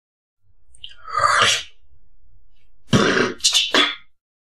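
A beatboxer's mouth and throat sounds: a breathy, rasping sweep about a second in, then three short harsh bursts near the end, much like coughs.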